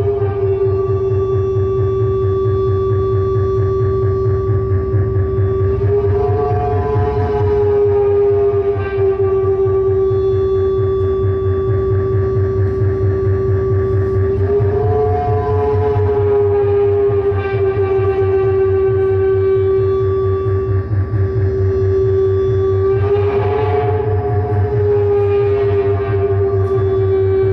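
Analog synthesizer noise improvisation from a Doepfer A-100 modular and a Moog MooGerFooger FreqBox rig: a steady held drone tone with many overtones that swells and bends slightly three times, about every eight or nine seconds. It sits over a low, rapidly pulsing buzz.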